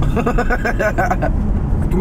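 A person laughing in quick repeated bursts for about the first second, then fading. Underneath is the steady low rumble of a moving car, heard from inside the cabin.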